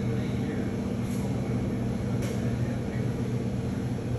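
Small helicopter hovering, its rotor and engine making a steady low drone.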